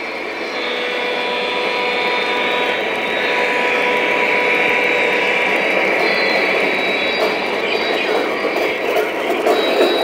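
Lionel O-gauge model freight train rolling past on three-rail track, the cars' wheels and the motors rumbling steadily and growing louder as the train goes by. A faint steady hum of tones underneath fades out about halfway through.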